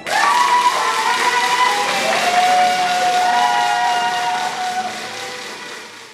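Several horns sounding in long, overlapping blasts of different pitches, the first sliding up in pitch as it starts, over a steady crowd-like hiss; the sound fades out over the last second or two.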